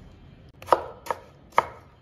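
Kitchen cleaver slicing a peeled tomato into strips on a wooden chopping board: three short, sharp knocks of the blade hitting the board in the second half.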